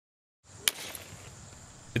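A golf club strikes a glass bottle filled with water, giving one sharp crack as the bottle breaks, a little under a second in.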